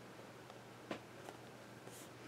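Faint handling noises on a paper journal page: a small tap about halfway through, a few lighter ticks, and a brief rustle near the end.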